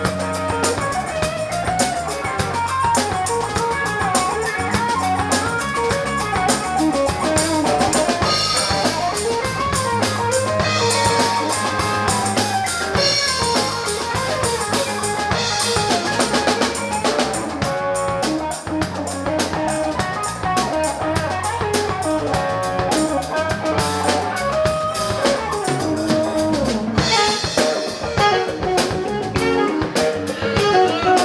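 A live band playing: a drum kit with bass drum and rimshots keeps the beat while a Telecaster-style electric guitar plays.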